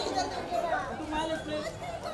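Several people talking over one another: overlapping, indistinct chatter of photographers calling out.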